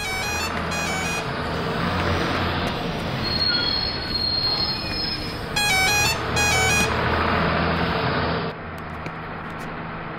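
Bus engine running steadily, with its horn sounding short repeated beeps just after the start and again in a quick series around six seconds in.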